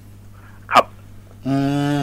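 Speech only: a man's quick 'khrap' about three-quarters of a second in, then a long hummed 'mmm' of agreement near the end, over a faint steady electrical hum.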